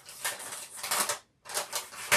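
Plastic piping bag crinkling as it is handled. The sound is a rapid run of small crackles that stops briefly a little after a second in, then starts again.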